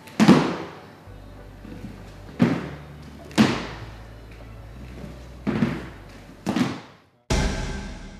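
Thuds of feet landing on a wooden gym floor during squat thrusts, coming in pairs about a second apart as the feet jump out to a plank and back in, over background music. Near the end a loud single music hit fades away.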